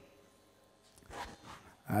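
A pause in a man's speech over a headset microphone: quiet room tone, a short faint sound a little after one second in, then his voice starts again near the end.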